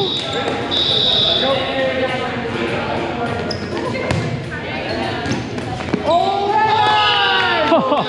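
Indoor volleyball rally in an echoing gymnasium: a volleyball is struck with sharp smacks, about four and six seconds in, and players' voices call out, loudest near the end.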